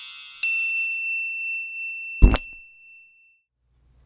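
Intro-sting chimes: a sparkling high shimmer fading out, then a single bright ding about half a second in that rings on as one high tone. A deep thump comes just after two seconds.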